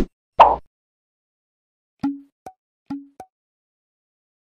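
Cartoon sound effects of an animated subscribe button: a loud short pop about half a second in. Then come two pairs of short clicks with a brief low tone, about two and three seconds in.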